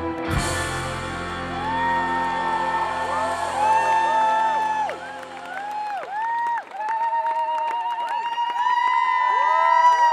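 A live band's final chord, from acoustic guitar, electric guitars and bass, ringing out and dying away over about five seconds. Over it a festival crowd cheers, whoops and whistles, with applause thickening near the end.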